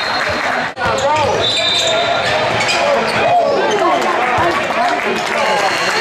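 Basketball bouncing on a hardwood gym floor amid players' and spectators' voices in a large gym; the sound drops out briefly about three quarters of a second in.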